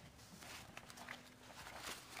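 Faint rustling of paper sheets being handled and turned, a few soft brushes and taps, in a quiet room.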